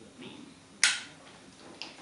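Glitter slime and its plastic Ziploc bag being handled in the hands, giving one sharp pop a little under a second in and a fainter click near the end.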